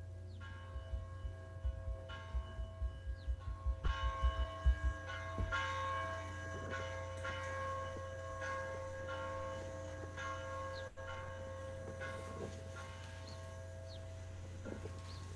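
Church bells ringing a peal, several bell tones sounding over and under one another, played back from a recording through a Zoom screen share. A steady low hum runs underneath, and a run of quick low thumps comes in the first five seconds.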